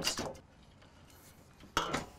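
Large wire whisk in a big stainless steel bowl of beaten eggs, mostly quiet, with one sharp metallic clank near the end.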